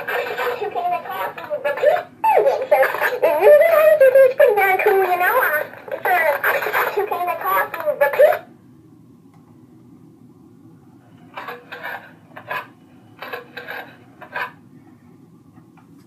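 Talking toucan toy playing back a recorded voice through its small speaker, high-pitched and speech-like, for about eight seconds. Several short sounds follow, between about eleven and fourteen and a half seconds in.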